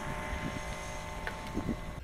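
Small single-cylinder two-stroke engine of the 1931 Josef Ganz Maikäfer prototype running steadily as the little open car drives away.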